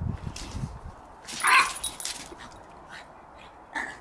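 Dogs at play barking: one loud, high-pitched bark about one and a half seconds in and a shorter one near the end, with a few low thuds at the start.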